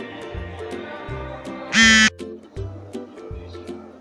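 Background music with a steady beat and bass line. About two seconds in, a brief, loud pitched sound with a wavering pitch cuts across it.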